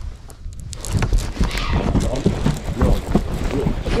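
Baitcasting reel cranked hard on a fish, a fast, fairly even run of clicks and knocks starting about a second in, over low wind rumble on the microphone.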